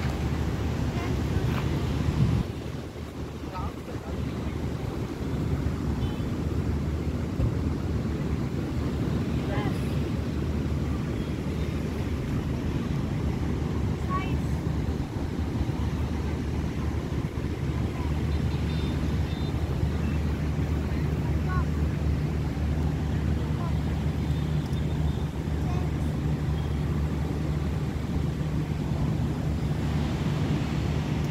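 Steady low outdoor rumble of wind on the microphone and distant traffic, with faint voices in the background; it dips briefly a couple of seconds in.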